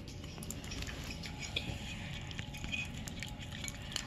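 Purple glitter slime being worked in a bowl: faint, irregular sticky clicks and small squelches.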